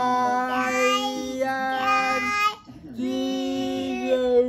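A voice singing long held notes that step from one pitch to another, breaking off about two and a half seconds in and starting again half a second later.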